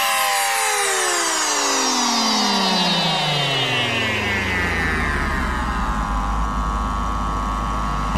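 Psytrance breakdown with the kick drum out: a layered synthesizer sweep falls steadily in pitch for about six seconds. It then levels off into a low, steady drone near the end.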